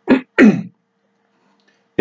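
A person clearing their throat: two short voiced bursts in the first second, the second with a falling pitch.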